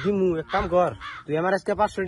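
A man's voice speaking Bengali in quick, raised phrases.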